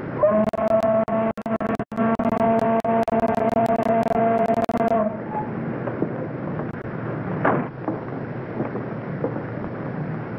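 A ferry's horn sounds one long, steady blast of about five seconds and then cuts off, over the crackle of an old film soundtrack.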